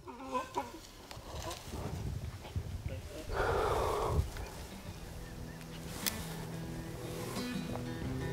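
Black bear running off through brush after being hit by an arrow, with a louder burst of noise about three seconds in. Soft background music fades in during the last few seconds.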